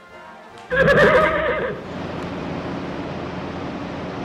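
A short burst of laughter about a second in, then a steady background hiss with faint music under it.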